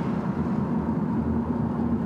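Steady car cabin noise while driving: a low engine and road rumble with a faint constant hum, heard from inside the car.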